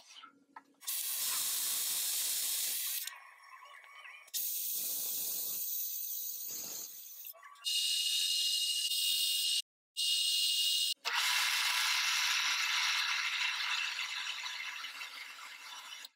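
Metal lathe cutting a chuck back plate: the tool hisses against the spinning workpiece during facing and boring passes. The sound comes in a series of short clips that start and stop abruptly, some with a steady whine from the running lathe underneath.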